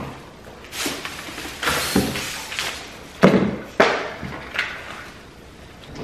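Grocery packets being handled: crinkling plastic packaging in several short bursts, with a couple of sharper knocks a little after the middle.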